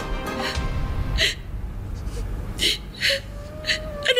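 A woman crying, with several short gasping sobs, over soft background music; a held note comes in near the end.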